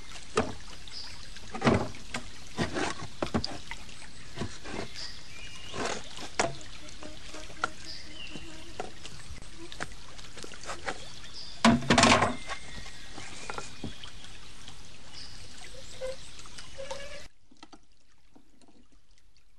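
Water pouring and running steadily, with scattered sharp knocks, the loudest pair about twelve seconds in. The water sound cuts off abruptly near the end.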